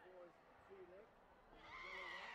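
Faint distant voices in a large hall, then about one and a half seconds in a loud, high-pitched yell that swells and is held past the end, as the taekwondo fighters close in to exchange kicks.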